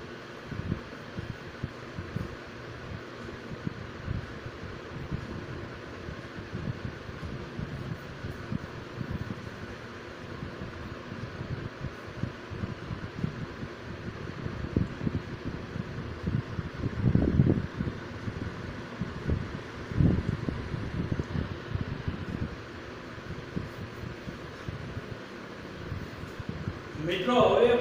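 Steady background hiss with irregular low rumbling that swells twice, about two-thirds of the way through.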